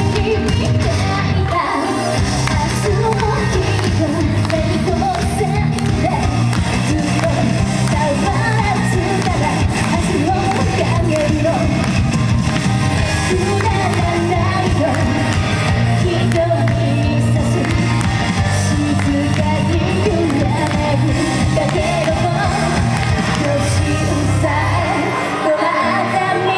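Female idol singer singing an upbeat J-pop song live into a microphone over a recorded pop backing track with a steady bass line, played through the PA of a large hall.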